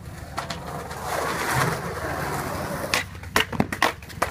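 Skateboard wheels rolling on concrete, then several sharp clacks near the end as the board hits the pavement in a missed trick.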